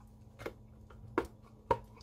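Ruby Cup's collapsible silicone steriliser cup being pulled open, its folds popping out with three short sharp snaps, the last the loudest.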